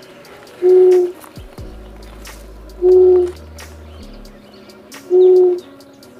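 Owl hooting: a short, low, steady hoot repeated three times, about every two seconds.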